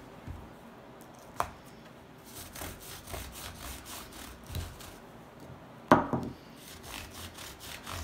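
Applicator head of a Kiwi sneaker cleaner bottle scrubbing back and forth over the knit upper of an Adidas Yeezy Boost 350 V2, a rhythmic rubbing of about three strokes a second. A sharp knock comes about a second and a half in, and a louder one near the six-second mark.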